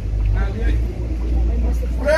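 A brief pause in a man's speech over a microphone, with a few faint words about half a second in. A steady low rumble, the loudest thing in the pause, runs underneath.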